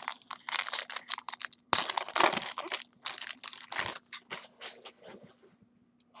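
Foil wrapper of a baseball card pack crinkling and tearing as it is ripped open, in a run of irregular crackles that die away near the end.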